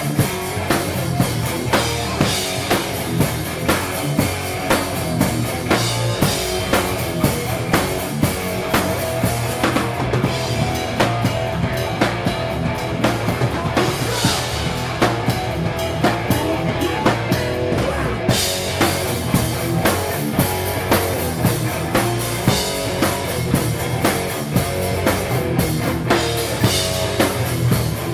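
A hardcore punk band playing live at full volume: pounding drum kit with a steady beat of about two hits a second under distorted electric guitar.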